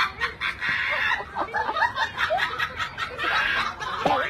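High-pitched laughter: a rapid run of short giggling bursts.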